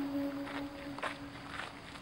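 A woman's Quran recitation trailing off: her held note fades away over the first second and a half, leaving a quiet pause with a couple of faint clicks.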